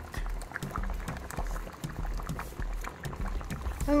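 Dancehall/Afrobeat background music with a steady bass beat, over a large pot of soup bubbling at a boil.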